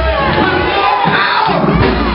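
A man singing loudly into a microphone in long, sliding notes over a band, with the congregation shouting and cheering along.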